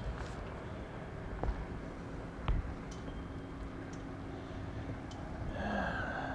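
Quiet small-town street ambience: a steady low rumble with two faint clicks, and a brief higher-pitched sound near the end.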